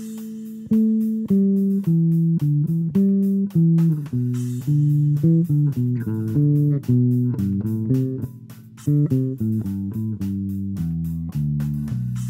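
Solo electric bass guitar playing a free-form line in A, plucked notes stepping up and down at a moderate pace.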